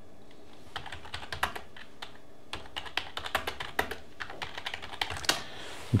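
Typing on a computer keyboard: an irregular run of quick key clicks starting about a second in and stopping shortly before the end.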